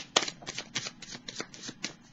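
Tarot deck being shuffled by hand: a quick, uneven run of light card snaps, about six or seven a second.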